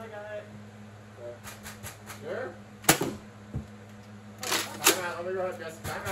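Nerf dart blasters firing during a Nerf battle, heard as sharp clicks and snaps. There are a few faint clicks about one and a half seconds in, a single loud snap near the middle, and a quick cluster of clicks ending in another loud snap past the two-thirds mark, with brief voices in between.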